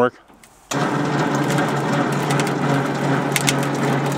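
Winch motor running steadily, starting abruptly about a second in and holding one even pitch, as the line is pulled in through a pulley block on a makeshift boom.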